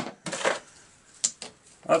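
A few sharp metallic clicks of a hand ratchet and its bit being handled and fitted onto the cylinder bolts.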